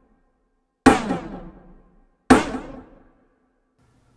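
Drum rimshot hits processed through Eventide H910 Harmonizer pitch-down, flanger and H949 Dual Harmonizer delay. Two sharp hits about a second and a half apart, each trailing off in a decaying tail of echoes that falls in pitch.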